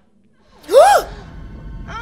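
A woman's short, loud shriek that rises and falls in pitch about three-quarters of a second in. It is followed by a low rumble and strained, grunting sounds from the fight on screen.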